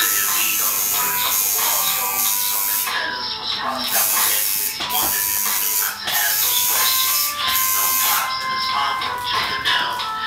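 A tattoo machine buzzing steadily as it inks a forearm, heard under loud background music.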